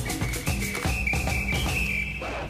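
Short TV sports-segment theme sting: a drum beat and bass under a high, whistle-like lead tone that steps slightly in pitch.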